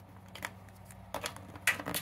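USB flash drive plug scraping and clicking against a computer's front USB port as it is fumbled in, not seating on the first attempt. A few light scrapes and clicks, louder near the end.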